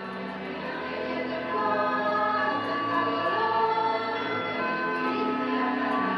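A choir singing slow, long-held chords, swelling louder about a second and a half in.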